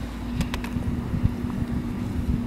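Low, uneven rumble of wind buffeting the microphone at an open doorway, over a steady low hum, with a few faint clicks about half a second in.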